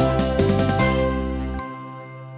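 Chiming jingle music of a TV show's closing theme over its animated logo. About one and a half seconds in the bass drops out and a last high note rings on as the music winds down.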